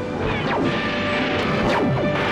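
Sci-fi TV soundtrack: music with laser blaster sound effects, a few sharp zaps falling quickly in pitch.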